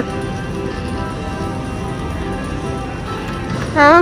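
Dancing Drums Explosion slot machine playing its win-celebration music as the win meter counts up at the end of a jackpot bonus, a steady run of short repeated notes.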